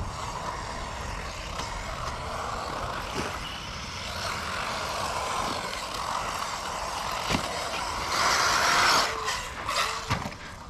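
Kyosho MP9e 1/8-scale electric RC buggy running on a dirt track, its electric motor and tyres making a steady noise that peaks around eight seconds in. A few sharp knocks come through, one near the end.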